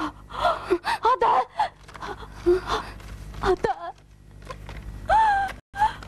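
A woman's voice gasping and making breathless, distressed cries, in short broken bursts, with a longer falling cry about five seconds in.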